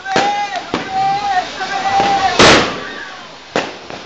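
Firecrackers and fireworks going off at close range: several sharp bangs, the loudest about two and a half seconds in and a smaller one near the end, over the hiss of a ground fountain firework spraying sparks.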